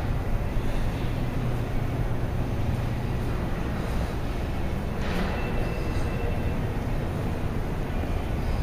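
Steady low rumble with a hiss over it and no distinct events: the background noise of a room.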